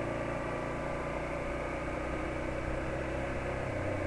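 Yamaha XTZ motorcycle engine running steadily while riding, with road and wind noise.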